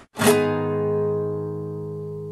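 A guitar chord strummed once, about a quarter second in, then left ringing and slowly fading.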